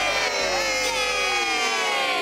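A small group of voices cheering "yay" together, the drawn-out cheers sliding down in pitch.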